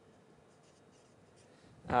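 Faint scratching of writing on a board, in short irregular strokes.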